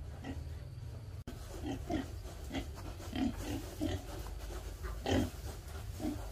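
Several hungry pigs grunting in a pen: short low grunts, two or three a second, the loudest one about five seconds in, over a steady low rumble.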